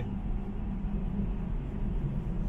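Steady low road and tyre rumble heard inside the cabin of a moving Tesla Model 3 Performance electric car.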